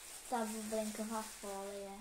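Mostly a girl's voice in drawn-out syllables, guessing; a plastic bag crinkles faintly at the start.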